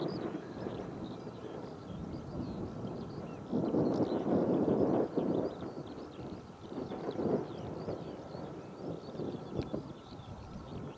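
Wind gusting across the microphone in an open field, with a long strong gust from about three and a half to five seconds in and a shorter one around seven seconds, over many faint high chirps.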